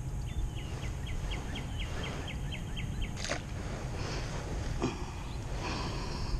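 A bird calling a quick series of short chirps, about five a second, for close to three seconds over steady low outdoor noise, with a sharp knock a little after three seconds in.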